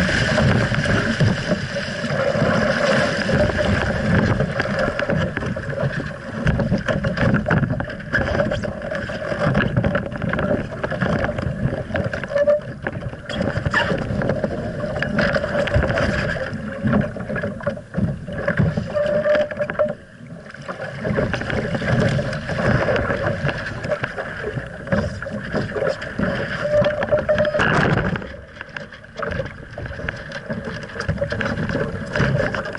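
Water rushing and splashing along the hull of an RS Aero sailing dinghy going fast through chop, surging and easing with the waves, with a brief lull about two-thirds of the way through.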